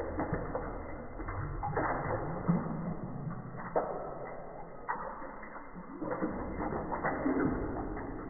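Water pouring and splashing onto a handheld phone, heard in slow-motion playback: the audio is slowed down and dropped in pitch, so the splashing comes out as a low, wavering burble with no high sounds at all.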